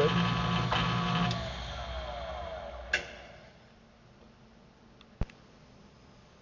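Milling machine with its end mill in a freshly cut key slot in a steel hub: the motor runs steadily, then is switched off and its whine falls in pitch as the spindle winds down, followed by a sharp click.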